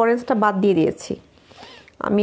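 A woman speaks briefly; then, about a second in, a soft rustle of a cotton dupatta being handled and spread out between her hands.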